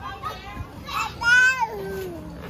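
A toddler's high-pitched squeal about a second in, sliding down in pitch, amid quieter child vocalizing.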